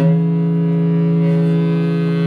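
Two baritone saxophones hold one long low note together, coming in sharply after a short break and sustaining it steadily with a rich, horn-like tone.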